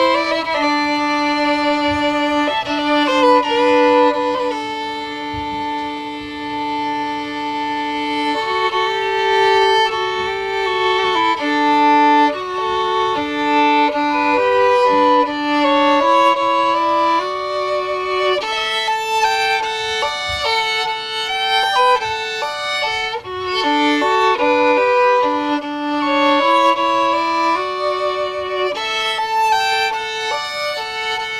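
Violin played with the bow: a slow melody with long held notes over the first several seconds, then quicker moving notes, at times two strings sounding together.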